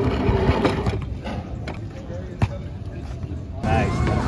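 Open-air ambience at an outdoor court: a steady background rumble with a few sharp knocks scattered through it, the loudest about halfway through. Near the end a man's voice starts talking.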